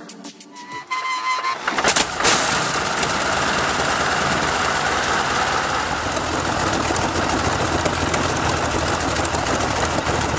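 Brutus's 46-litre BMW V12 aircraft engine starting: it catches with a sudden loud burst about two seconds in, then runs steadily.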